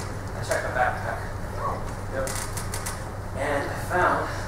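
Distant stage dialogue, voices picked up from across a theatre in short phrases, over a steady low hum, with a few light clicks a little past two seconds in.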